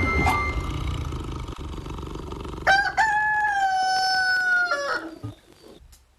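A rooster crowing once, a little before halfway: a short opening note, then one long held note of nearly two seconds that drops away at the end.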